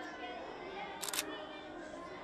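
A camera shutter clicks once, a short sharp snap about a second in. Behind it, children's voices recite steadily.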